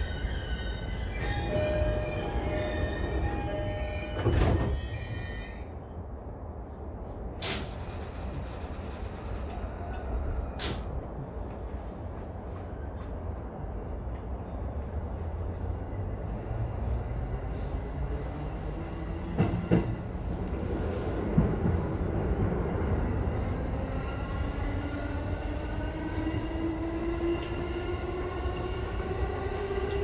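Running noise of a Keihin-Tohoku–Negishi Line electric commuter train heard from the driver's cab: a steady rumble of wheels on rail with a few sharp clicks. Over the last several seconds a motor whine rises in pitch as the train picks up speed.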